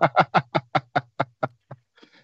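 A man laughing heartily: a rapid run of 'ha' bursts, about five a second, that grow weaker and further apart and trail off near the end.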